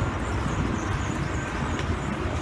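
Steady rumble of city street traffic, low and continuous, with no distinct footsteps or other events standing out.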